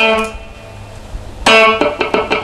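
Electric guitar playing a funk rhythm: a single note held over from the previous bar rings and fades for about a second and a half, then the pattern starts again with a sharply picked note and quick muted, percussive strokes.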